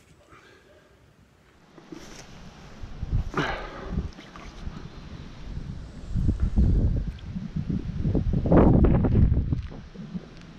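Low rumbling and bumping handling noise on a close camera microphone while a jack pike is held upright in the canal water to recover before release. The noise starts about two seconds in and is loudest near the end.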